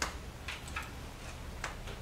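A few soft, irregularly spaced mouth clicks, lip and tongue sounds of a woman pausing between sentences, the first one the sharpest, over a steady low room hum.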